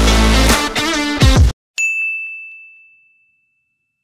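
Background music with electric guitar cuts off abruptly, and a single bright ding sound effect then rings out once and fades away over about a second and a half.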